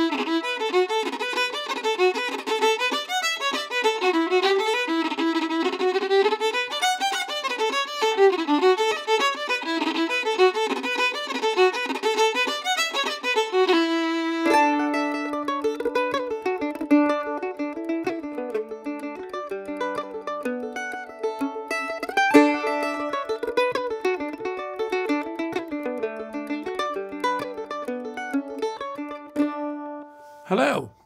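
Solo fiddle playing an Irish tune, fast and full of tight bow-triplet ornaments, which stops about halfway through. Different music with plucked strings and held notes then takes over.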